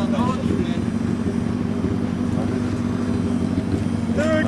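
Car engine running steadily, a loud, even low hum with no revving, with faint voices near the start.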